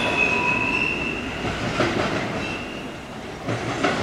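Double-stack intermodal freight cars rolling away around a curve. The wheels squeal against the rails in a high tone that fades out about a second in and briefly returns midway, over a steady rumble and clatter that slowly grows fainter.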